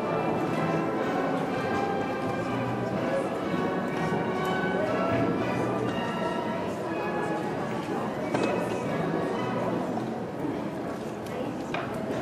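Indistinct chatter of many voices over music playing in the background.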